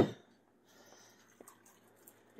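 A single sharp knock of kitchenware, a ceramic bowl or wooden spoon set against a dish, right at the start, then a few faint light clicks as the bowls are handled.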